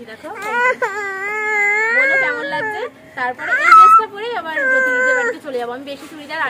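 A young child crying: a long wavering wail of over two seconds, a short louder cry near the middle, then another drawn-out wail.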